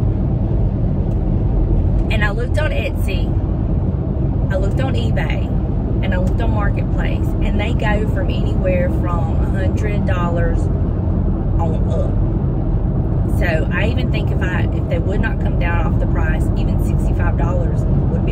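A woman talking over the steady road and engine noise of a moving car, heard from inside the cabin.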